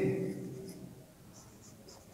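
Marker pen writing on a whiteboard: faint, short scratchy strokes. The end of a spoken word dies away at the start.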